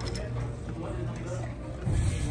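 Restaurant room tone: a steady low hum with faint voices in the background.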